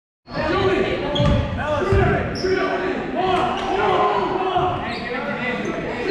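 A basketball bouncing on a hardwood gym floor, with two heavy thumps a little over a second in, under players' indistinct voices, echoing in a large gym.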